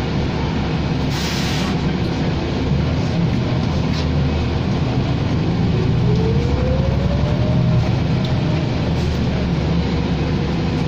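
Cabin sound of a New Flyer Xcelsior XD60 diesel articulated bus under way: a steady low engine drone with road noise. A brief hiss comes about a second in, and a whine rises in pitch from about halfway through as the bus gathers speed.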